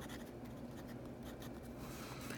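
A Parker Jotter rollerball with a 0.5 mm Parker refill writing on paper: a faint, continuous scratching of the tip across the page.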